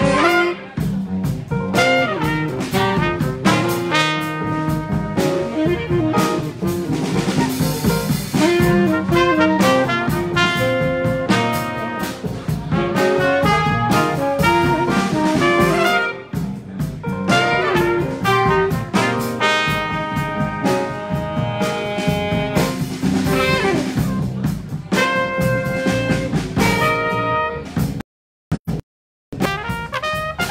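Live jazz combo playing a tune: trumpets and a tenor saxophone sounding together in front of upright bass and drum kit.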